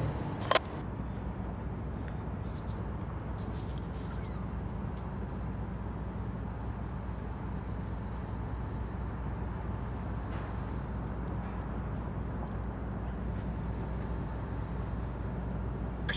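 Steady low engine rumble, with a single sharp click about half a second in.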